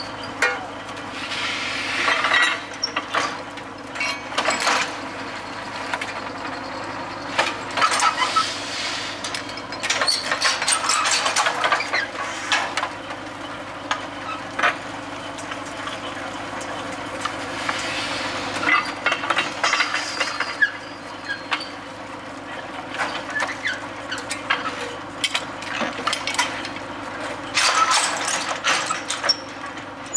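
Truck-mounted well-drilling rig's engine running steadily while a new length of drill stem is added, with repeated sharp knocks and clanks from the stem and rig throughout.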